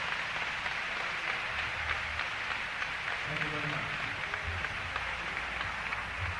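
Audience applauding after a jazz band number, a steady dense clapping with a few voices mixed in.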